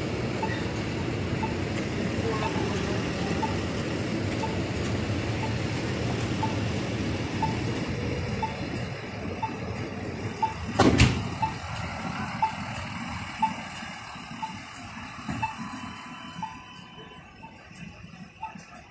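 City street traffic noise, with a short high beep repeating about once a second. There is one loud thump about eleven seconds in, and the traffic noise fades over the last few seconds.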